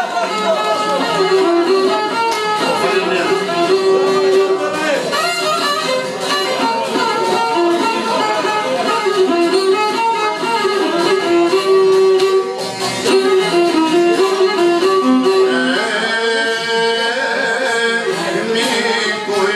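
Live Albanian folk music: a violin carries the melody over a plucked çifteli and a long-necked lute, in a steady, continuous passage.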